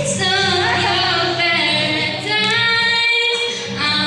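A girl singing a song into a handheld microphone, accompanied by her own strummed acoustic guitar.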